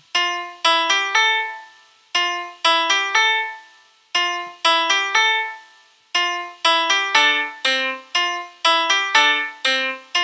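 GarageBand's Steinway Grand Piano sound triggered by a MIDI step sequencer: a short looping phrase of piano notes that repeats about every two seconds. About six seconds in the pattern becomes busier as more steps are lit on the button grid.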